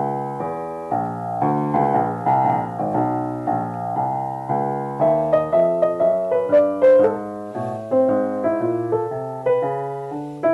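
A 1940 Sohmer five-foot baby grand piano, rebuilt with new strings and hammers, being played: a run of sustained chords, then from about five seconds in a higher melody of single notes over them.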